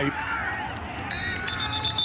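Stadium crowd noise, with a referee's whistle starting about a second in and trilling toward the end, blowing the play dead after a tackle.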